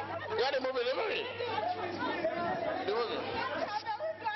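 Several voices talking and calling out at once, overlapping and unclear, over a faint low steady hum.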